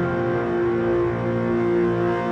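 Background music with long, sustained held notes.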